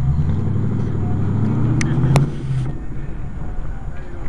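A car engine running, its low note rising slightly and then fading out after about two and a half seconds. Two sharp clicks come about two seconds in.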